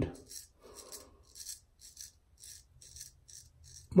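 Straight razor scraping lathered stubble on the cheek and jaw in short, quiet, rasping strokes, about three a second.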